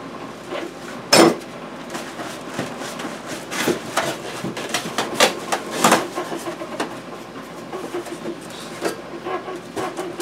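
Packing being handled: plastic wrapping rustling and crinkling, with scattered knocks and clunks as parts and the foam insert are moved, the sharpest about a second in.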